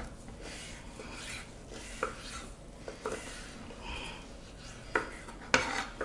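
Knives slicing raw pork into cubes on a wooden cutting board: quiet scraping and rubbing, with a few sharp taps of the blades against the board.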